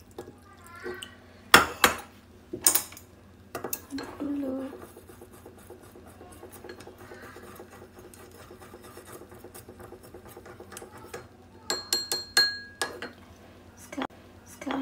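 Chopsticks stirring a sauce in a small ceramic bowl: a few sharp clinks against the bowl and crockery, then quiet stirring. Near the end comes a quick run of clinks, and the bowl rings briefly.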